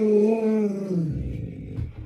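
Alaskan Malamute vocalizing: one long, held call that slides down into a low grumble and fades about a second in.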